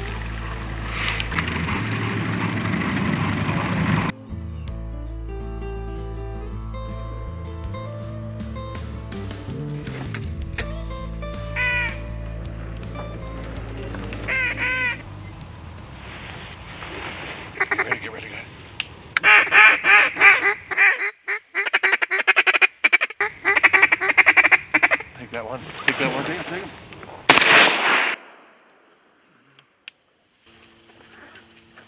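A boat running through water for about four seconds, then background music with held notes, then loud runs of duck quacks from about two-thirds of the way in.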